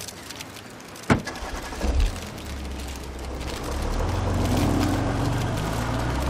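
A car door shuts about a second in, then the car's engine starts and runs with a steady low rumble that grows louder as the car pulls away.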